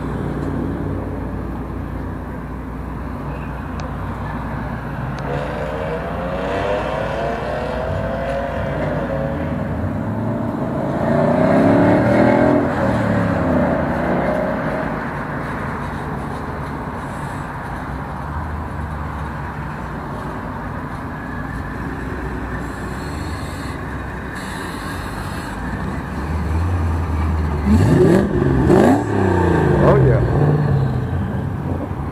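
Car engine running with revs that rise and fall, loudest about twelve seconds in and again in several quick rising surges near the end.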